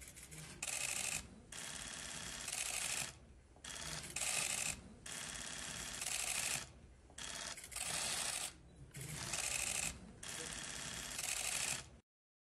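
Press photographers' cameras firing bursts of rapid shutter clicks, one burst after another, each lasting about half a second to a second and a half.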